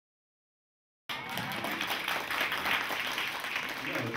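Silence, then audience applause that cuts in abruptly about a second in and carries on as a steady clatter of many hands.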